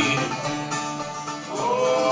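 Live acoustic country band playing: plucked guitars and other string instruments, with a held melody note sliding upward near the end.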